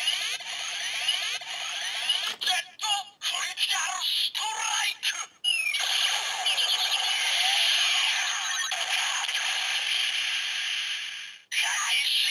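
DX Gamer Driver toy belt with the Jet Combat Gashat playing its electronic sequence through its small speaker: a synthesized voice call, game-style music and sweeping sound effects, all thin with no bass. A long, dense loud stretch of effect sound runs from about six seconds in and cuts off shortly before the end.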